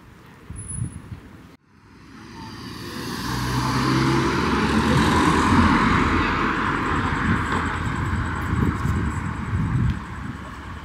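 Road traffic: after a brief dropout about a second and a half in, the engine and tyre noise of a passing vehicle rises over a couple of seconds and stays loud.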